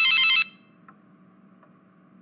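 Telephone ringing: a short burst of high electronic trilling that stops about half a second in.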